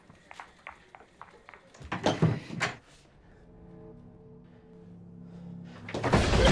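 Soft ticks and knocks in the room, then a louder thud with a rattle about two seconds in, followed by a low, sustained suspense-music drone that slowly swells.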